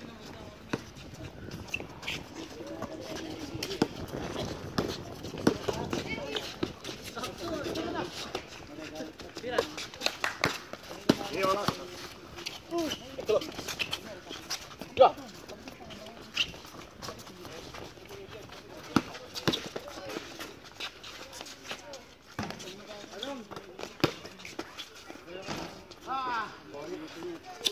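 Pickup basketball on an outdoor concrete court: players' voices calling out now and then over scattered short knocks of the ball bouncing and of play on the court.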